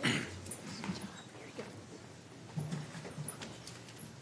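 Low room noise of people getting up and moving about: scattered footsteps and small knocks, with faint voices in the background and a brief louder noise right at the start.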